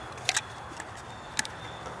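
Fire-starting rods and strikers being handled on a wooden board: two quick light clicks about a third of a second in and another about a second and a half in, over a steady outdoor background hiss.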